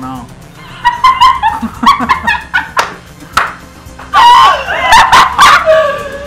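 Loud wordless yelps and cries from a man's voice in short bursts, some with sharp clicks between them, over background music.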